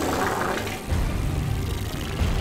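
Cartoon fart sound effect: a long, loud, noisy rumble that deepens about a second in.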